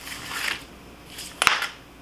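Plastic cutting mat being peeled back off a sheet of adhesive vinyl: a soft rustle, then a single sharp click about one and a half seconds in.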